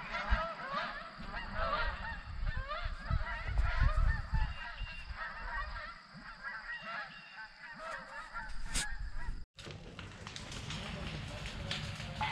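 A large flock of geese flying over in V-formations, honking constantly with many overlapping calls. The calling thins out after about six seconds and breaks off abruptly near the end.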